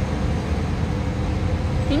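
Steady low rumble of outdoor background noise, with a faint steady hum above it.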